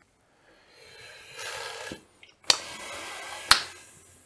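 Two sharp clicks about a second apart, the first about halfway in, preceded by a soft rush of noise that swells and then stops.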